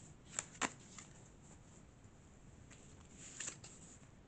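Faint handling of a tarot deck: two soft card snaps in the first second, a few light ticks, then a brief rustle near the end as a card is drawn from the deck.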